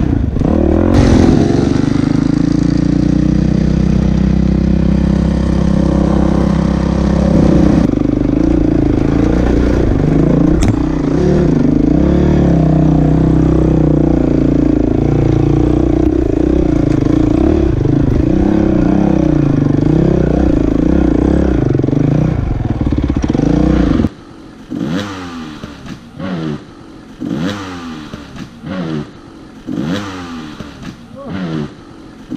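A Honda dirt bike engine running loud under throttle, its pitch rising and falling as the rider works over a rough trail, with clatter from the bike. About 24 seconds in it cuts off abruptly and gives way to a much quieter stretch where a dirt bike engine revs in short rising bursts.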